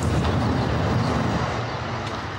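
A car driving past, its engine and tyres giving a steady low rumble that eases a little near the end.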